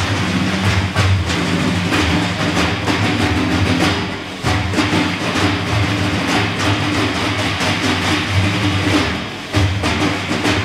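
An ensemble of large hand-played frame drums (erbane and def) playing together in a steady, driving rhythm, with deep low strokes under dense higher slaps. The rhythm briefly eases about four seconds in and again near the end.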